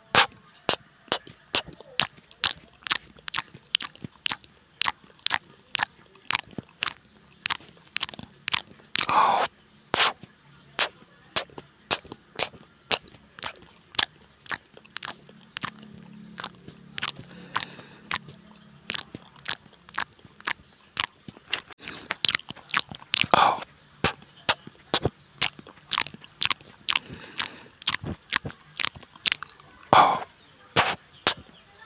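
Close-miked chewing of fried chicken in chilli sambal: a steady run of sharp, crisp mouth clicks and crunches, about two to three a second. Two longer breathy sounds stand out, about a third of the way in and again later.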